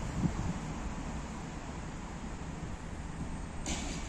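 Outdoor city ambience: a steady low rumble of road traffic, with a small thump just after the start and a brief high hiss near the end.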